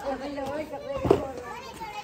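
Voices of several people talking and calling, with a single sharp thump about a second in.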